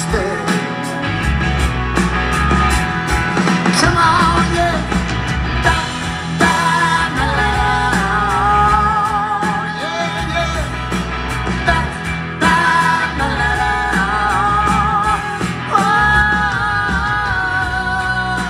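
Live band music: electric guitar, grand piano and bass guitar with drums, and a voice singing long notes that waver in pitch through the second half.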